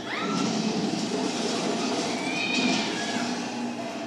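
Film soundtrack played through a television: a brief rising cry right at the start, then a loud, steady rushing rumble.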